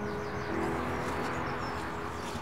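Small birds chirping faintly over a soft, sustained background music underscore.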